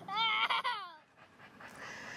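A dog whining: high-pitched, wavering cries lasting about a second and ending on a falling note.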